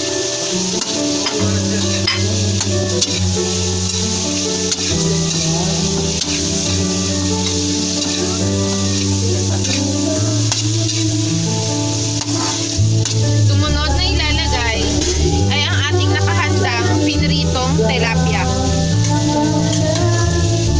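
Carrots, onion and garlic sautéing in hot oil in a metal wok, a steady sizzle, with a metal spatula stirring and scraping against the pan.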